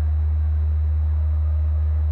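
A loud, steady low electrical hum, typical of mains hum on an old videotape recording. Beneath it is a faint murmur from an indoor audience.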